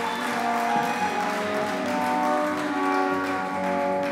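Brass ensemble playing processional music in held chords, in a reverberant space.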